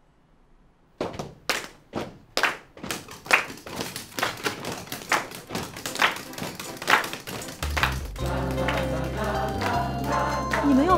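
A group of people making hand percussion, claps and knocks on desks. It starts with single sharp strikes about every half second, then thickens into a fast, busy patter. Music with a steady low beat joins near the end.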